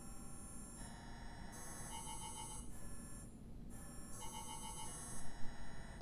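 An electronic ringing alert tone, like a phone ringtone, plays in two repeated phrases with a short break between them. Each phrase has a rapid warbling trill in its middle.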